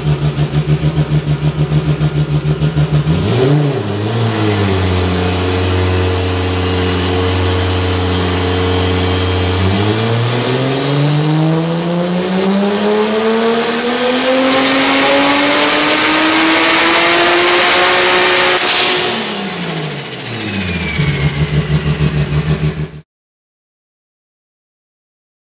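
Toyota Supra's turbocharged 2JZ inline-six with a 74mm BorgWarner turbo, run on a chassis dyno. It starts with a lumpy, loping idle, gives a short blip, and holds a steady low-rpm note. Then comes a full-throttle pull of about eight seconds, rising in pitch, with a high turbo whistle climbing above it and holding near the top. The throttle closes, the revs and the whistle fall away together, and the engine settles back into its lumpy idle.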